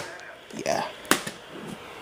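Handling noise from a plastic VHS case: one sharp click about a second in, just after a brief murmur of a voice.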